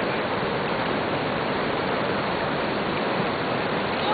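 Steady rushing of running water, an even noise that does not change.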